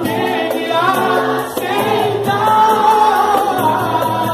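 Live pagode: several voices singing together over a strummed cavaquinho and light percussion with a steady, quick beat.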